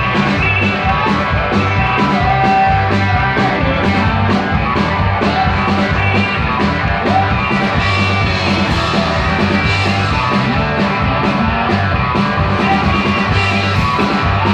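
Live band playing a loud country-rock number, with electric guitar over bass and a steady drum beat.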